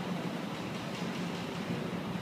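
Room tone of a large hall: a steady, even hiss with no distinct events.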